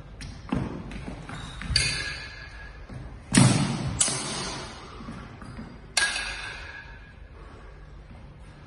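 Steel sidesword blades clashing and striking a buckler in sparring: about five sharp metallic hits that ring on briefly, the loudest a heavy clang-and-thud about a third of the way in.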